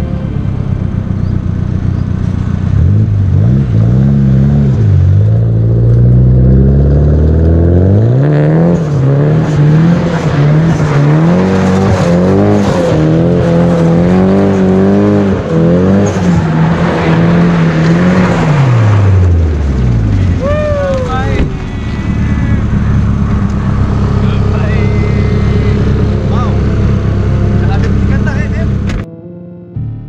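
Nissan Silvia S15 drift car's engine revving hard, its pitch swinging up and down again and again as the throttle is worked through the slide. Then a short falling squeal, and the engine runs on at a steadier, lower note.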